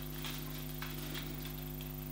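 Faint handling of string on a wooden pole as it is retied shorter: a few small ticks and light rustle over a steady electrical hum.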